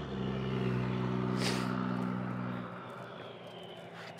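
Ford 289 V8 idling steadily, cutting off abruptly partway through, with a brief hiss about a second and a half in.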